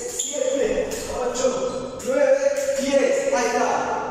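A man's voice speaking, the words not made out.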